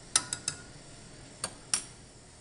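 Metal spoon clinking against a stainless steel saucepan: three quick sharp clinks at the start, then two more about a second and a half in.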